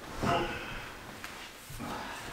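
A short strained vocal grunt from a person lifting a heavy load, followed by faint handling noise with a small knock a little past a second in.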